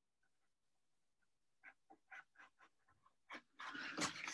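Near silence, then from about halfway a string of faint, short scratches of a pen drawing on watercolour paper, with a soft breathy noise building near the end.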